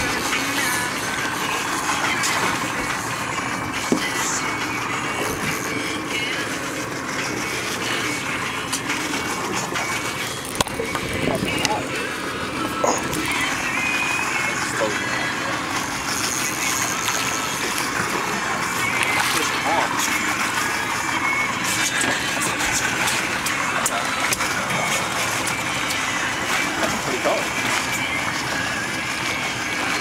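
Steady noise of a small fishing boat on open water, with indistinct voices over it and a few brief knocks.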